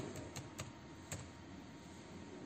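Typing on a computer keyboard: a handful of faint, irregular key clicks.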